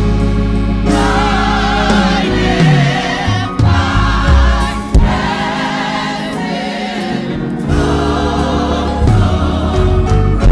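Gospel choir singing held, wavering notes over sustained low bass accompaniment.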